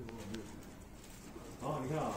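Low, indistinct voices murmuring, with two faint clicks just after the start and a louder stretch near the end.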